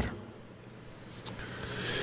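A short pause in a man's speech through a microphone: low room tone with a faint steady hum, a brief click a little past halfway, and the noise slowly building toward the end before he speaks again.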